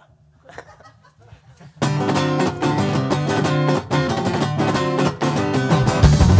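Acoustic guitar strummed in a steady rhythm as the opening of a rock song: a few quiet notes, then loud strumming from about two seconds in.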